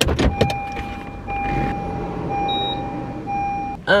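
A few sharp clicks as the car's fuel door release is pulled. Then a car's electronic warning chime sounds as a steady high tone, broken briefly about once a second, with one short higher beep partway through.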